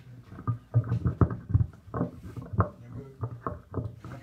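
Microphone handling noise: a dozen or so irregular thumps and knocks as a microphone on its stand is set up and adjusted, over a steady low hum.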